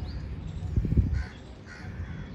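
Crow cawing twice in quick succession. A low thump about a second in is the loudest sound.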